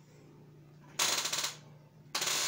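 A short burst of rapid rattling noise about a second in, lasting about half a second, over a faint steady low hum.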